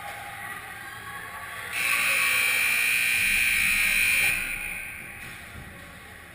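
Ice rink's scoreboard horn sounding one steady blast of about two and a half seconds, then ringing away in the arena. It marks the end of the period.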